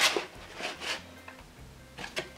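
Soft rustling of a sheet of painted mixed-media paper being slid and positioned in a plastic lever circle punch, two brief rustles early on, then quiet.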